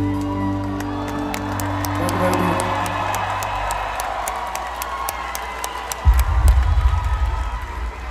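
A rock band's last held chord fades out while an arena crowd cheers, whoops and claps. From about six seconds in there is a run of loud low thumps.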